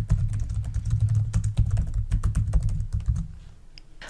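Fast typing on a computer keyboard, a rapid string of keystrokes that stops about three seconds in.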